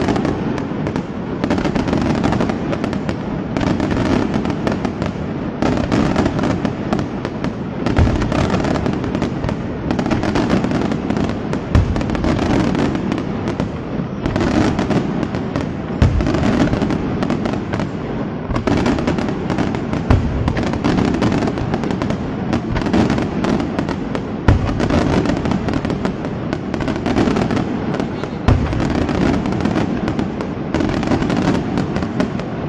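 Senatore Fireworks daytime fireworks display: a dense, continuous crackling from crackle shells and firecrackers, punctuated by a louder single bang about every four seconds.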